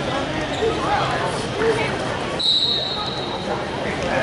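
Indistinct voices in a large gym hall, with a short, steady high-pitched tone a little past the middle.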